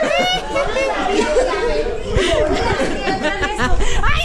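A group of people talking over one another and laughing.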